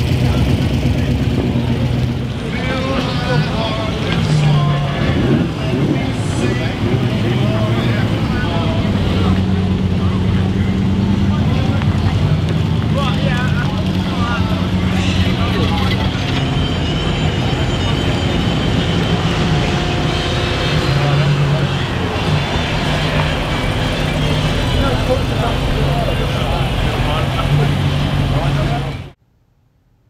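Sports car engines running at low speed as cars drive slowly past, the engine note holding steady and stepping up and down in pitch, with people talking around them.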